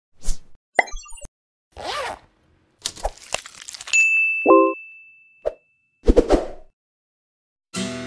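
A run of short sound effects for an animated logo intro: pops, clicks and a whoosh, separated by silent gaps, with a high ringing ding about four seconds in that fades over two seconds. Near the end a strummed acoustic guitar comes in as the song starts.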